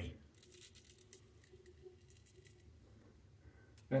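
Palmera straight razor scraping through lathered stubble: a faint, irregular crackle of small clicks that dies away about two and a half seconds in.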